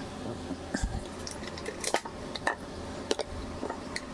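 Scattered light clicks and taps of small hard objects being handled, with a dull thump about a second in, over a low steady hum.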